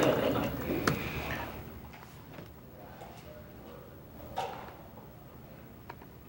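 Laughter dying away over the first couple of seconds, then quiet room tone broken by a few faint clicks.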